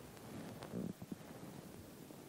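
Faint movement noise in a quiet church: a short low rustle or rumble partway in, followed by two soft knocks.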